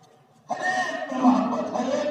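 A man's voice speaking in drawn-out phrases with some held vowels, coming in after a brief pause about half a second in.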